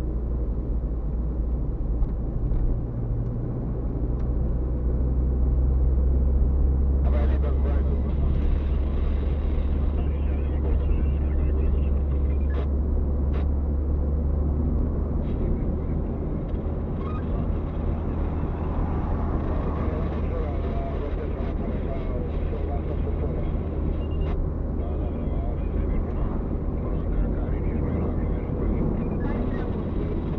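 Steady low engine and tyre drone of a car driving on an open road, heard from inside the cabin, with a few light clicks partway through.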